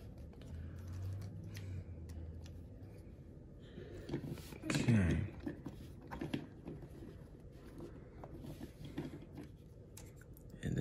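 Light scattered plastic clicks and rubbing as the joints and parts of a small plastic transforming robot toy are moved and snapped into place by hand. A brief low voice sound comes about halfway through.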